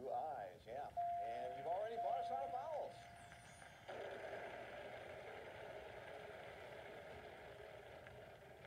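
Game-show soundtrack playing from a phone's small speaker: voices with a single steady chime-like tone held for about two seconds, then from about four seconds in a steady wash of noise.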